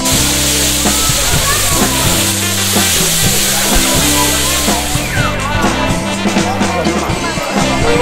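Sliced pork sizzling on a flat iron griddle, a steady hiss that fades about five seconds in, over background music with a steady bass line.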